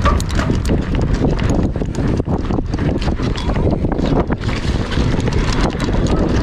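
Mountain bike ridden fast down a rough dirt trail: tyres crunching over the ground with frequent irregular rattles and knocks from the bike, under a heavy rumble of wind on the microphone.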